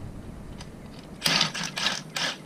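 Ryobi cordless power tool driving the screw of a three-jaw bearing puller, run in three short bursts in the second half to back the puller off and release it.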